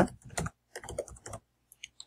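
Computer keyboard keys being typed as a password is entered: quick keystroke clicks in two short runs, with a couple more near the end.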